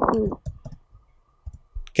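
A brief spoken "sí", then a pause with a few faint, short clicks over a faint steady tone.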